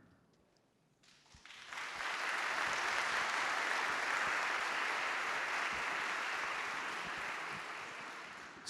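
Audience applauding: it begins about a second and a half in, builds quickly to a steady level, and eases off near the end.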